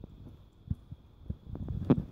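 Irregular low thumps and knocks from a handheld phone being carried while walking, with one sharper, louder knock near the end.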